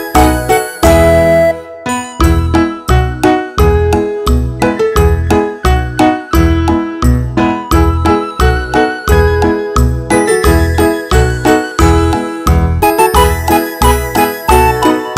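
Background music: a light, jingly children's tune of bell-like notes over a steady beat.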